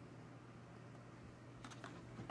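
Near silence with a faint low hum; near the end, a few soft light clicks of carded blister-pack action figures being handled and set onto a stack of other cards.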